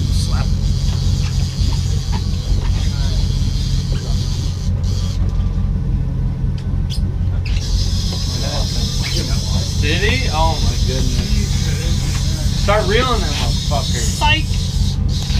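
Charter fishing boat's engine running steadily at trolling speed, a continuous low drone, with wind on the microphone. Brief voices can be heard behind it in the second half.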